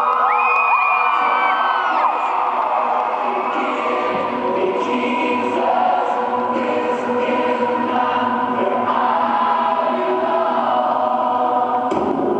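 Live band intro music in an arena: held, sustained chords, with faint regular high ticks coming in after a few seconds. High-pitched screams and whoops from the crowd sound over it in the first couple of seconds.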